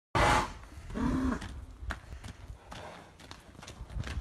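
Yearling Arabian filly's hooves striking a gravel yard as she is led on a lead line, a few sharp uneven hoofbeats. A loud short burst at the very start and a brief pitched call about a second in come before the hoofbeats.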